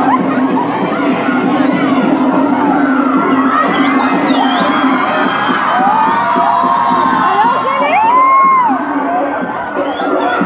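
A crowd of schoolchildren shouting and cheering, with many high shrieks rising and falling over the din, loudest about eight seconds in.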